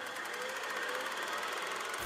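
Quiet opening sound design of a TV crime-drama trailer: a steady, fast buzzing pulse with a faint tone slowly rising beneath it.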